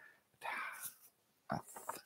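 A man's short, faint breathy exhale through the nose, followed by a few faint clicks about a second and a half in.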